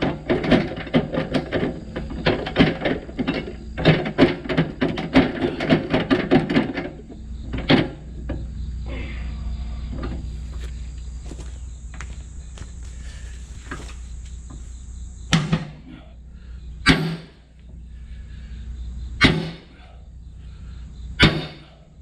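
Steel being hammered to break a rust-seized PTO shaft free: a fast run of metallic blows for about seven seconds, then, after a pause, four single heavy hammer blows spaced about two seconds apart.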